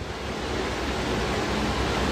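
Steady rushing noise of moving air on a phone microphone, slowly growing louder.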